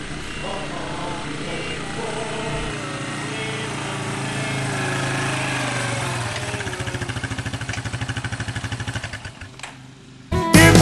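A lawn mower's small engine running, with a rapid, even pulsing in its sound late on before it dies away near the end.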